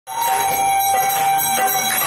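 Temple bells ringing for aarti: several bells ringing at once in a steady, unbroken peal.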